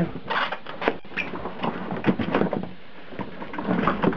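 Kärcher K5 Compact pressure washer being lifted out of its cardboard box. The cardboard and foam packing scrape and rustle against the plastic housing, with scattered light knocks.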